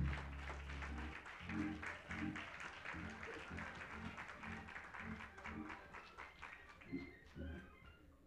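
Live band music: low bass notes over a steady beat of short sharp strokes, growing quieter toward the end.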